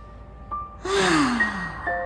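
A man's long, voiced sigh about a second in, breathy and falling in pitch as it trails off. Soft background music with sustained bell-like notes plays underneath.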